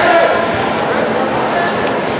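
Indistinct chatter and calls from spectators and teammates echoing in a large gym.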